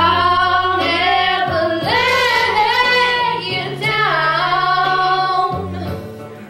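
Two girls singing a duet into microphones, holding long notes with some wavering, over steady low accompaniment chords. The voices ease off near the end.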